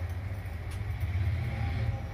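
A steady low mechanical hum, like a motor or engine running, that swells slightly about a second in.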